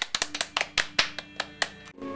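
Two people clapping their hands in quick, uneven claps that stop shortly before the end.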